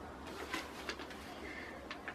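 A quiet pause in a small room with low room hum and a few faint clicks and rustles of paper being handled.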